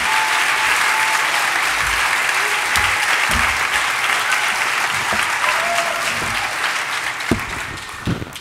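Large audience applauding steadily, dying away over the last second or so.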